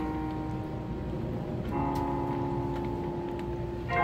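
Marching band playing a soft opening: quiet held chords, changing to a new chord a little under two seconds in, with a louder, fuller entrance starting right at the end.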